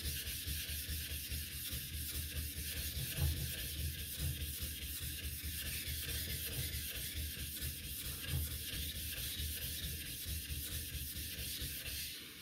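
A flattening plate being rubbed back and forth over a wet Bester #1000 water stone, a steady rhythmic gritty scraping. The stone is being lapped flat because it came out of the box not quite flat, finer in the middle and coarser at the edges.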